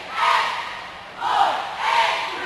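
A cheerleading squad shouting a cheer in unison, loud chanted phrases coming about once a second.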